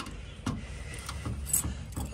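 A bunch of keys clinking and a key working at a door lock, with a few light metallic clicks and scrapes.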